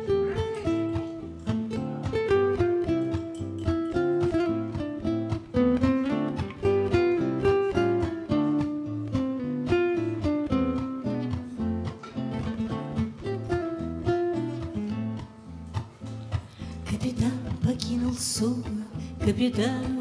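Two acoustic guitars playing the instrumental introduction to a bard song: a picked melody of short notes over a plucked accompaniment. Near the end it turns to rhythmic strummed chords.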